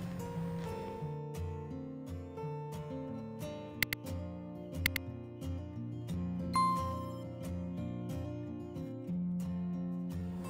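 Soft background music with held notes over a slow bass line. About four and five seconds in come sharp clicks, then a short bright bell-like ding: a subscribe-button sound effect of mouse clicks and a notification bell.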